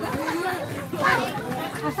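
Children's voices chattering and calling out over one another.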